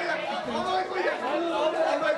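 Several voices talking over one another in animated chatter.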